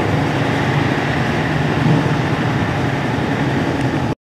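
Steady background noise with a low hum and no distinct events: the ambient sound of an open showroom.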